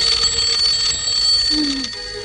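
A high, steady bell-like ringing tone held over a rushing shimmer that fades out about a second in. Near the end a short low note slides downward.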